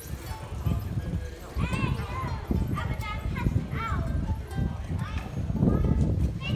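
Street ambience: high-pitched voices calling out in short rising-and-falling cries about once a second, over a steady low rumble of footsteps and traffic.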